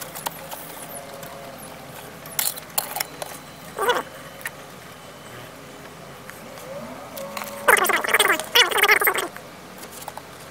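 An animal calling: one short call about four seconds in, then a louder run of calls near the end, with a few faint taps before them.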